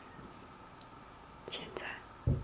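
Quiet room tone with a faint steady hum; about one and a half seconds in, a brief soft whisper.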